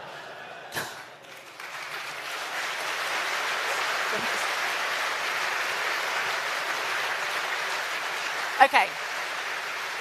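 Large audience applauding, the clapping swelling over the first couple of seconds and then holding steady.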